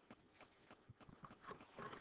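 Near silence with faint, evenly spaced clicks, about three a second.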